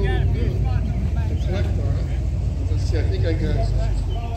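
Indistinct talk of people nearby over a steady low rumble.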